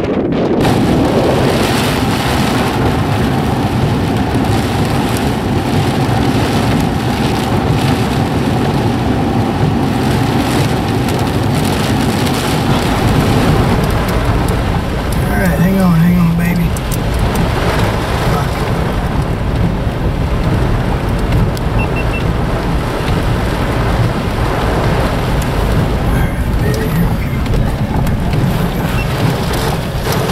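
Heavy, wind-driven rain hitting a car's windshield and body, heard from inside the car as a loud, steady rush.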